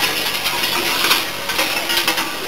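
Large metal bells worn by Perchten clanging and jangling in a dense, irregular clatter, loudest about a second in.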